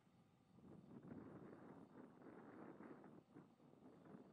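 Near silence: faint outdoor background noise, a soft rushing that swells about a second in and fades near the end.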